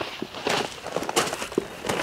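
Footsteps crunching on crushed gravel as a man walks at a steady pace, about one step every three-quarters of a second.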